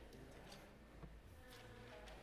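Near silence: the room tone of a large hall, with a faint steady low hum.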